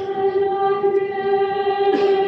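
A church choir singing one long held note together, steady in pitch.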